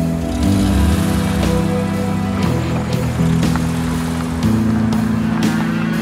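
Dramatic background music: a bass line in held low notes that change every second or two, under a steady beat.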